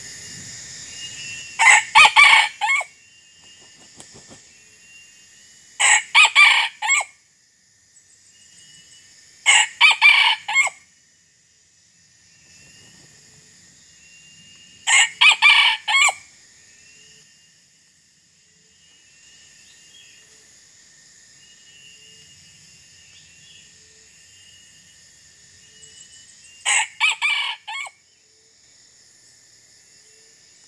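Red junglefowl rooster crowing five times, each crow about a second long and broken into several notes. The crows come every four to five seconds, then after a longer gap near the end. Under them runs a steady high insect drone, with small bird chirps between the crows.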